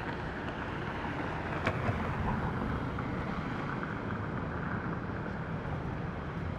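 Steady outdoor rumble of wind on the microphone and distant motors, with one faint click just under two seconds in.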